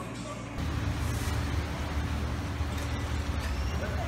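Low, steady engine rumble of a nearby motor vehicle on the street, starting about half a second in.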